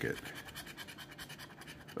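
The edge of a large metal coin scraping the coating off a paper scratch-off lottery ticket in quick, repeated strokes.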